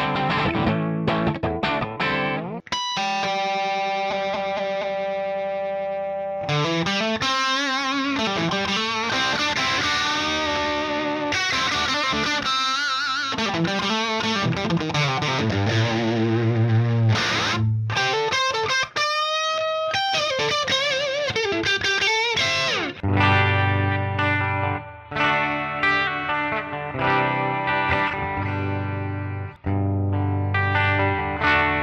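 ESP Mirage electric guitar played through Digidesign Eleven Rack effect presets, recorded direct. Sustained notes and chords waver in pitch with vibrato through the middle, a note bends up a little past halfway, and short chopped chords over low notes follow near the end.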